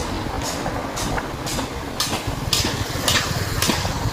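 Motorbike engine running steadily while riding along a street, with road and traffic noise and short hissing bursts about twice a second.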